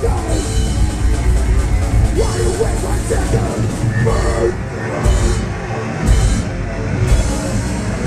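Live extreme metal band playing at full volume: heavily distorted guitars and bass over a pounding drum kit. In the second half the cymbals drop out twice for a moment between sharp accented hits.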